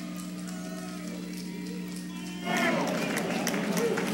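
Music over an arena PA with crowd noise and a low steady hum underneath; louder voices and cheering rise about two and a half seconds in.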